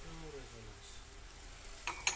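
Faint steady hiss with a distant voice trailing off at the start, then near the end a single short clink of a porcelain cup being set back down onto its stacked saucer.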